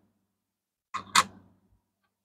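Two quick clicks about a second apart from each other's start, a copper cent being handled and set against other coins on a wooden table.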